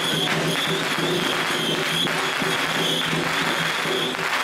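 A long string of firecrackers crackling densely over procession music, with a high held tone running above it.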